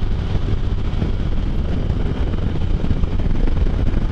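Steady wind buffeting on the microphone over the engine and road noise of a Can-Am Spyder three-wheeled motorcycle cruising at highway speed.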